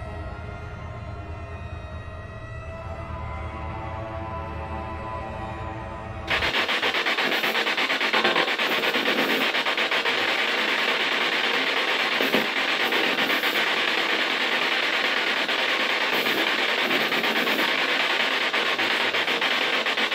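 Eerie music for about six seconds, then an abrupt switch to a loud, steady rasping noise from an unseen source, which the investigators call a threatening sound.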